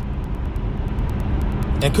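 Steady low rumble with an even hiss above it, running unchanged through a gap in the talk.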